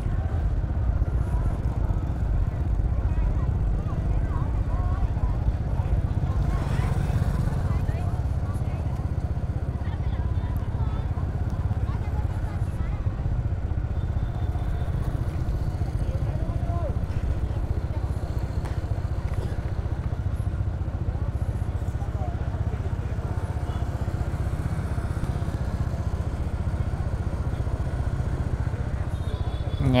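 Steady low rumble of a motorbike being ridden slowly, engine and road noise at an even level, with faint voices of people along the street.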